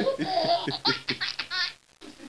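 A man laughing hard in a string of quick, breathy bursts that stop just before the end.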